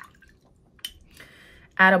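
Watercolour brush being rinsed in a glass jar of water: faint swishing, with one light click a little before halfway.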